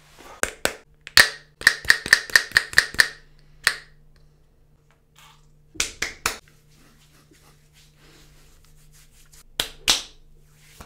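Palms slapping and patting a freshly shaved bald scalp: a few sharp slaps, then a quick run of about seven pats, then scattered single pats with pauses between.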